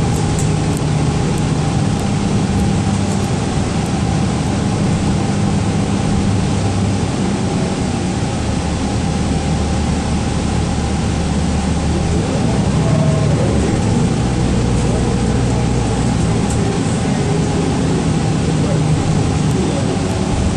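Inside a 2012 Gillig Low Floor 40-foot transit bus under way: a steady low engine drone over road noise. The engine note shifts in pitch twice, about eight and fourteen seconds in.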